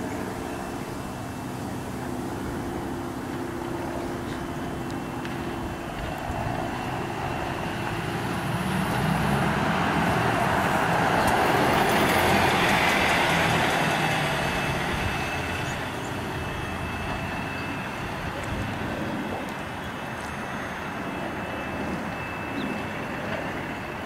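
Volvo B5LH hybrid bus pulling away and driving past close by. A steady engine hum gives way to engine and tyre noise that builds to a peak about halfway through, then fades as the bus moves off.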